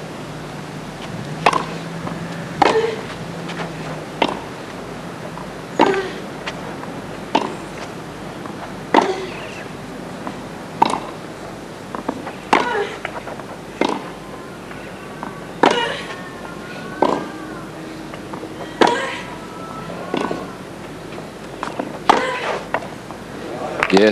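Tennis ball struck by racquets in a baseline rally on a hard court, starting with the serve: about fifteen sharp pops, roughly one every one and a half seconds.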